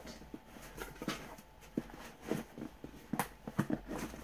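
Cardboard box being handled and pushed open, with scattered taps, knocks and scrapes at irregular intervals as an inner tray slides out of its sleeve; the sharpest knock comes a little after three seconds.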